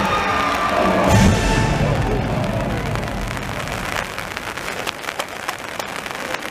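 Orchestral show music, with a deep boom about a second in, fades out as a crowd cheers and applauds; the clapping fills the second half.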